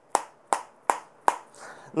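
A can of Copenhagen snuff being packed by flicking a finger against the lid: four sharp, even taps, about two and a half a second, settling the fine-cut tobacco before a pinch is taken.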